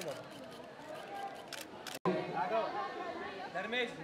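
Press cameras' shutters clicking in quick, uneven runs over background chatter. About halfway through, a brief dropout is followed by several people talking over one another.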